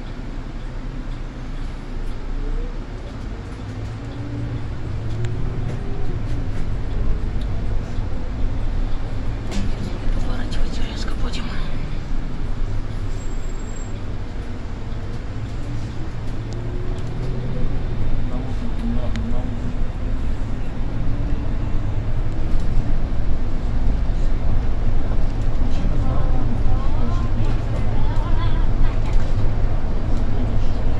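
Low, steady drone of a Solaris Urbino IV 18 articulated bus's engine and drivetrain heard from the driver's cab, growing louder as the bus moves off and picks up speed.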